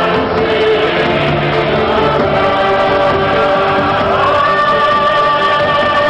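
Music with a choir singing long held notes, moving to a new chord about four seconds in.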